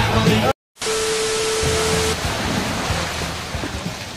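Water rushing and splashing in a steady hiss, from a car flooded through its open windows in a car wash. It cuts in after a short silence about half a second in, with a steady tone over its first second or so, and slowly fades.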